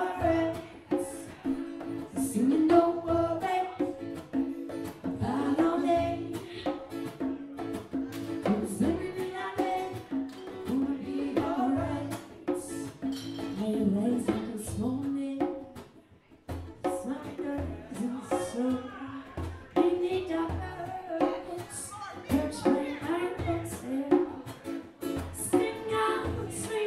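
Live band music: a singer with strummed acoustic guitar and drums, with a brief break about sixteen seconds in.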